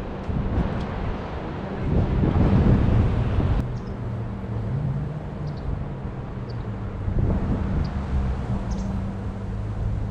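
Outdoor construction-site ambience: a steady low engine hum, with gusts of wind on the microphone that are loudest about two to three and a half seconds in and then drop away suddenly.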